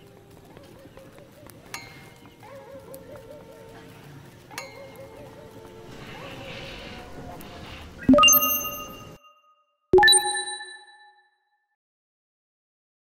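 Two bright chime dings about two seconds apart, each struck sharply and ringing out for about a second before cutting to silence. Before them there is only a faint background for several seconds.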